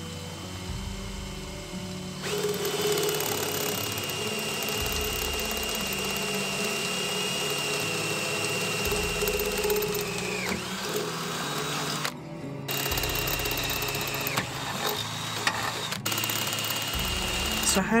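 Cordless drill boring holes through a narrowboat's steel taffrail. It starts about two seconds in and runs at a steady high pitch, winding down near the middle, then comes back in two shorter runs. Background music with a bass line plays underneath.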